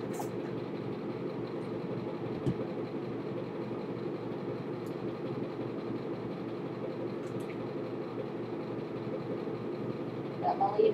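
Steady hum of a ventilation fan running, with a few faint brief clicks and a soft knock about two and a half seconds in.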